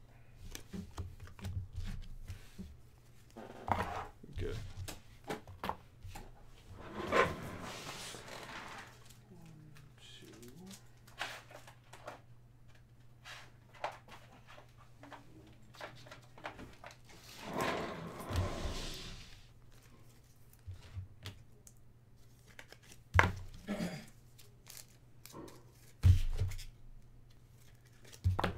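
Faint, muffled voices in the background with scattered small clicks and rustles of handling, over a steady low electrical hum.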